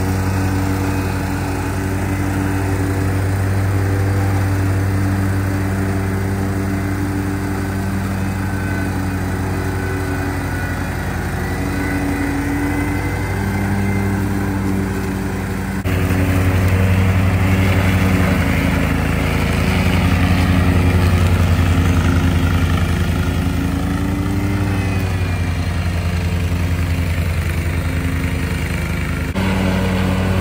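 Hustler Hyperdrive zero-turn mower's V-twin engine running at speed as its deck cuts through tall grass and brush, a steady hum whose pitch wavers slightly under load. The sound steps up suddenly about halfway through.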